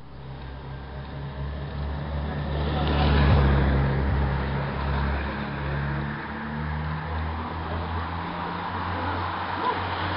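A motorcycle engine approaching and passing, loudest about three seconds in, followed by the rushing noise of a pack of racing bicycles going by close.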